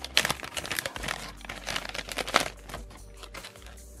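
Clear plastic soft-bait packaging being handled, crinkling and crackling in the hands, busiest in the first two and a half seconds and then thinning out.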